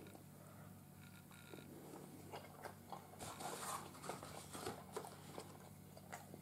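Faint chewing of a bite of breaded chicken: soft, irregular crunching and mouth sounds starting about a second and a half in.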